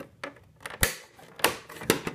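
Sharp plastic clicks and clacks from the yellow plastic gate of a backwater valve's normally-closed cassette being handled and swung against its seat after being snapped in; a few small ticks first, then louder clacks about a second in and near the end.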